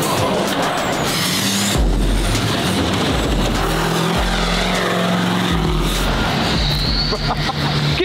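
Hummer driving hard across the lot, its engine running under heavy throttle, with a loud burst of noise about two seconds in.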